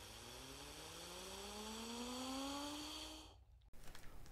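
Faint intro sound effect: a rising synthetic tone with several overtones over a hiss, slowly climbing in pitch and growing louder, then cutting off a little after three seconds in.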